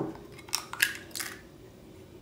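A hen's egg cracked against a glass mixing bowl: three sharp clicks of shell on glass and breaking shell within about a second.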